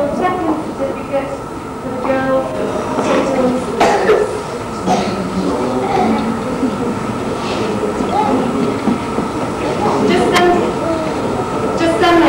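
Indistinct murmur of voices in a large hall over a steady high hum, with two sharp knocks, about four and ten seconds in.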